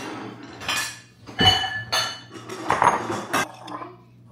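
Ceramic bowls clinking and clattering as they are handled and set down on a stone countertop: a run of sharp knocks, some leaving a short ring.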